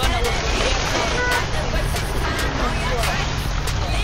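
Indistinct talking over a steady low rumble of wind on the microphone.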